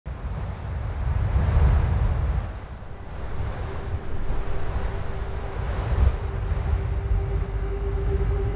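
Wind buffeting the microphone, a gusting rumble that swells and eases. About halfway through, a steady low note comes in and holds beneath it.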